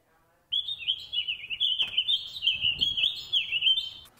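Songbird chirping and twittering in a continuous, rapidly warbling high song that starts suddenly about half a second in.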